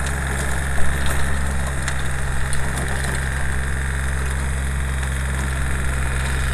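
Compact tractor's engine running steadily as it pulls a rear-mounted rototiller through garden soil, with one brief knock about a second in.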